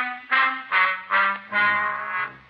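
Brass music bridge between radio-drama scenes: trumpets play a run of short punched notes, about one every 0.4 s, then a held note, with low brass coming in underneath about a second and a half in.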